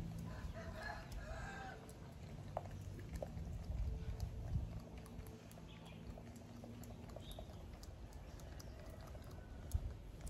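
Close, faint rustling and small clicks of a macaque's fingers picking through hair, over a steady low hum with a few soft thumps around the middle. About half a second in, a long pitched animal call lasts about a second and a half.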